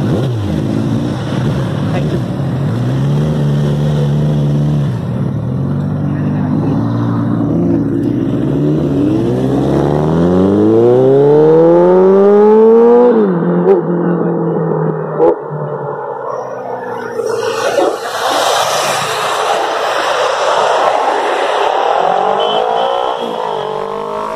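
Sport motorcycle engines revving and accelerating past, the engine pitch rising and falling several times. Midway one engine climbs steadily in pitch for several seconds, then drops suddenly.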